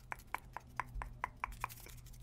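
A rapid, even series of short soft clicks close to the microphone, about four a second.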